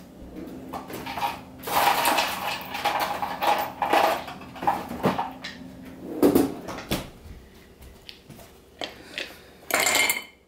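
Ice cubes clattering and clinking into a short glass: a dense rattle of small hard knocks for a few seconds, then a few separate knocks.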